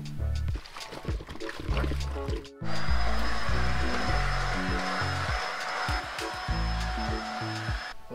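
Stick vacuum cleaner running steadily, coming in about a third of the way through as an even motor hiss with a thin high whine, and cutting off at the end. Background music with a bass line plays throughout.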